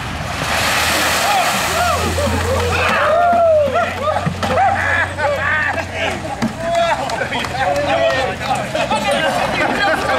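A few dozen buckets of ice water dumped over a group of men at once, a splashing rush lasting about two and a half seconds, followed by a crowd of men shouting and laughing at the cold.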